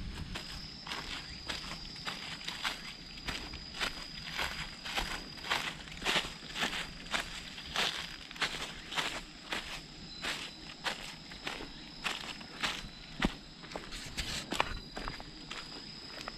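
Footsteps walking at an even pace on a gravel and leaf-strewn dirt path, about two steps a second, with a thin steady high-pitched tone behind them.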